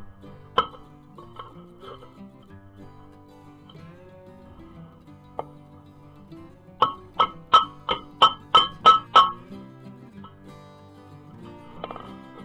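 A hammer tapping on steel with a ringing clink: one strike about half a second in, then a quick run of about eight taps, roughly three a second, near the middle. Background guitar music plays throughout.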